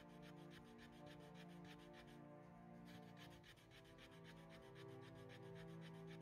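Fire plough: a wooden stick rubbed rapidly back and forth along the groove of a wooden hearth board, an even rasping rub of several strokes a second with a short break a little over two seconds in, as the groove starts to smoke on the way to an ember. Faint background music with held notes underneath.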